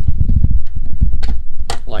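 Low rumbling handling noise with light clicks and taps as fingers work the antenna cable free from the metal antenna plate of an opened AirPort Extreme base station. The rumble is heaviest in the first second.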